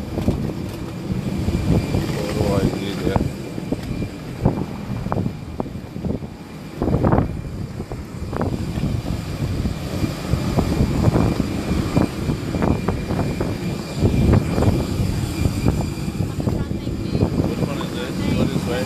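Airport apron noise: a steady rumble of aircraft engines with a faint high whine above it, wind buffeting the phone's microphone, and scattered knocks of handling and footsteps.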